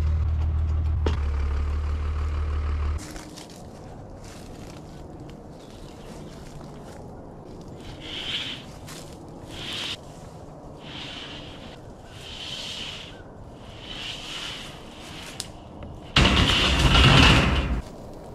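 A steady low engine hum for about three seconds. Then sheets of 3/16-inch A36 steel plate are slid by hand across a stack on a trailer, scraping steel on steel in several short swells, ending in a loud, long scrape of about two seconds as a sheet slides off the trailer's edge.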